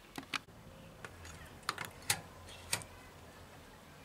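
About six short, sharp clicks and taps, irregularly spaced and some in close pairs, over a quiet background.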